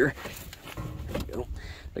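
A person climbing up onto a truck: low, uneven rumble of movement and microphone handling, with a faint mutter partway through.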